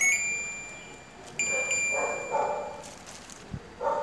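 LG inverter air conditioner control board beeping twice: a short high electronic beep at the start and a longer one about a second and a half in, each ringing out. It is the unit acknowledging the switch-on command.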